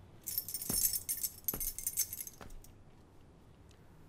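Slow footsteps across a room, three dull steps a little under a second apart, with a bright metallic jingling like keys that shakes along with the walk for the first two and a half seconds.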